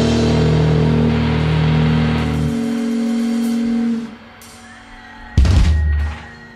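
A rock band's final chord ringing out on electric guitar and bass: the bass note stops about two and a half seconds in, and the guitar fades out about four seconds in. Near the end the band plays one sudden, loud closing hit.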